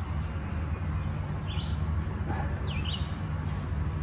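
A bird chirping twice, briefly, the second chirp falling in pitch, over a steady low hum.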